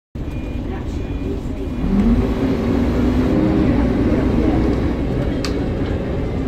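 Bus diesel engine and running gear heard from inside the passenger saloon while under way: a steady low rumble with the engine note rising about two seconds in, and a sharp rattle near the end.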